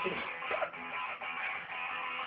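Quiet guitar music, a run of plucked notes.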